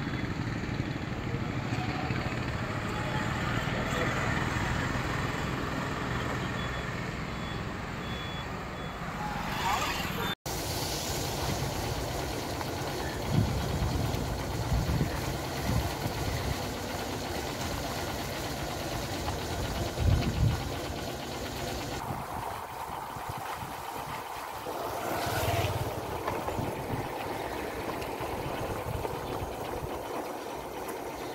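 Street traffic: vehicle engines running and passing at a road junction. After a sudden cut about ten seconds in, the steady running noise of a vehicle travelling along a rough road, with a few low thumps.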